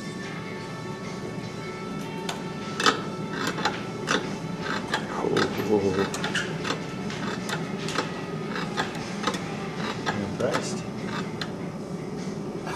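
Stator winding machine running as it winds magnet wire onto a brushless outrunner motor stator: a steady whine of several tones for the first couple of seconds, then irregular clicks and knocks from the wire-guide mechanism.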